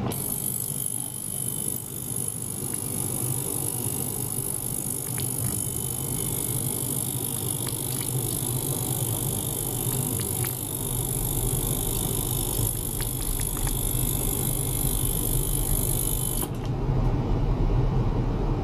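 Small benchtop ultrasonic cleaner running: a steady low buzz with a high-pitched hiss over it. The hiss cuts off suddenly about a second and a half before the end, while the low buzz continues.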